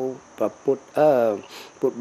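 An elderly man speaking Khmer in short phrases, one syllable drawn out, over a steady high-pitched whine in the background.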